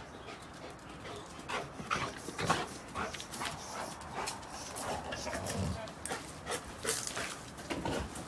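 A Rottweiler at play, breathing hard, with irregular clicks, scuffs and knocks of steps running through.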